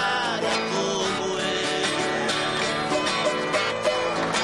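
Viola caipira music: an instrumental break in a moda de viola, the instrument's paired steel strings plucked in busy runs.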